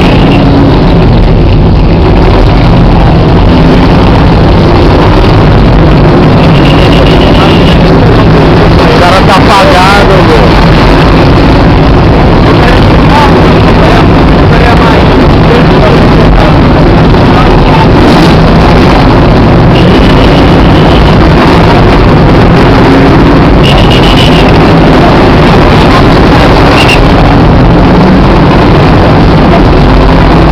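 A vehicle engine idling steadily under a constant loud hiss, with a few short, high beeps.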